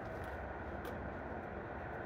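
Steady background hiss of room noise, with one faint click a little under a second in.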